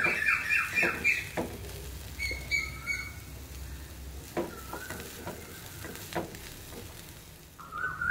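An onion, coconut and chilli-flake sauté sizzling lightly in an aluminium kadai, with a spatula stirring through it and knocking against the pan a few times.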